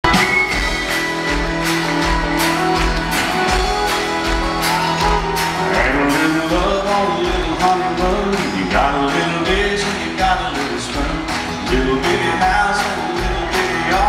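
Country band playing live, with electric and acoustic guitars, bass and drums on a steady upbeat rhythm. This is the song's instrumental intro, before the vocals come in.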